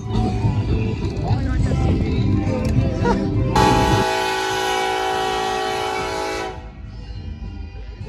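Union Pacific freight locomotive's air horn sounding one long, steady chord of several notes, starting about three and a half seconds in and lasting about three seconds. Before it there is low background rumble with faint voices.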